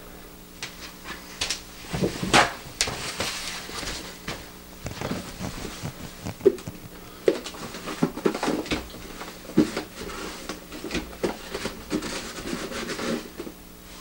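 Paper towel rubbing and wiping inside the plastic housing of a drip coffee maker, with irregular rustling scrubbing strokes and small knocks, as it wipes up cooked-on coffee residue.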